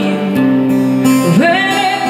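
A woman singing live into a microphone, accompanied by a strummed acoustic guitar; about one and a half seconds in, her voice slides up and holds a long note.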